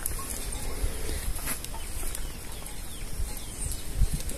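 Farmyard background with faint, short bird calls over a steady low rumble of wind on the microphone.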